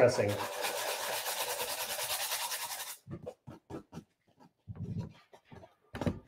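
Sandpaper (220 grit) rubbed quickly back and forth over the paper-covered edge of a decoupaged metal tin: a fast scratchy rasp that stops suddenly about three seconds in. It is followed by a few shorter, separate scratching strokes.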